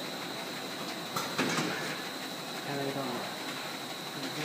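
Automatic grab-type carton packing machine running, a steady mechanical hum with a thin high whine, and sharp clicks from the mechanism a little over a second in.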